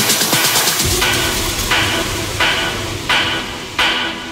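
Techno music: a fast, even hi-hat-like pulse, then about a second in a deep bass comes in under a bright chord stab that repeats roughly every 0.7 s, each stab fading away.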